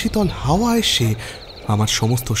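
Crickets chirping in a steady, evenly pulsed high trill, laid as a night ambience bed under voices.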